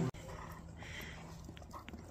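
A dog making faint, soft sounds, with a couple of light clicks near the end.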